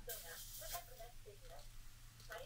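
Faint sizzling of potato-starch-coated rockfish fillets as they are laid by hand into hot rice oil in a pan.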